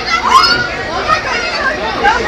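A crowd of young people talking and calling out over one another, several higher voices at once.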